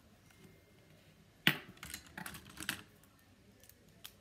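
One sharp click about a second and a half in, then about a second of lighter, irregular clicks and rattles: plastic drawing supplies being handled.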